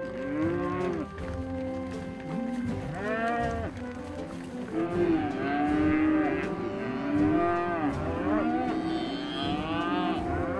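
A herd of beef cattle mooing, many overlapping calls of different pitches, each one rising and falling, a dozen or so in all.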